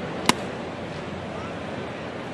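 A single sharp pop about a third of a second in as a 95 mph pitch smacks into the catcher's mitt, over the steady hum of a ballpark crowd.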